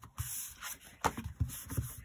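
Hands sliding and turning over a cardstock card on a grid-paper craft mat: a few papery scuffs and soft taps.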